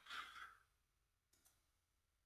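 Near silence, with a faint exhaled breath in the first half-second.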